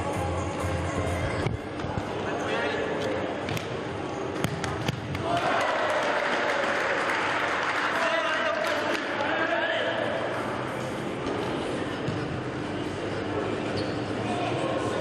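Indoor football match: a few sharp ball kicks and bounces over a steady din of shouting voices, which swells louder about five seconds in.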